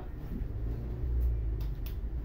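Low rumble with a few faint clicks and knocks about a second and a half in: the noise of someone getting up and handling the camera.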